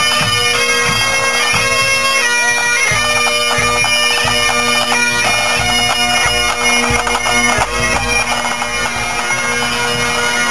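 A pipe band playing: Great Highland bagpipes, their steady drones held under the chanter melody, with snare and bass drums beating along.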